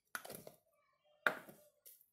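Two short knocks about a second apart, from kitchen things being handled and set down on the counter.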